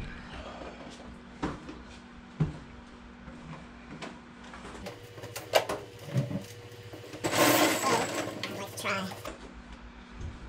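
Hollow plastic RotoPax fuel cans being handled on and off a metal roof basket: scattered knocks and bumps, then a louder scraping rustle a little past halfway through.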